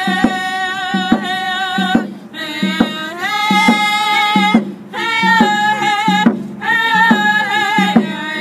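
A group of women singing in unison in high voices, keeping time with a hand drum struck on a steady beat a little faster than once a second. The singing breaks off briefly between phrases while the drum keeps time.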